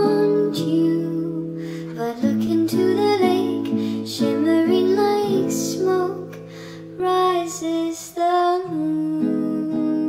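Acoustic guitar cover music: a plucked acoustic guitar with a soft female voice singing over it, with no clear words. The music softens briefly about six seconds in, then picks up again.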